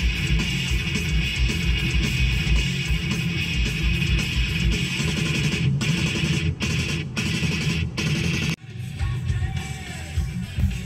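Rock music with guitar over a steady, dense beat, with several brief breaks in the second half.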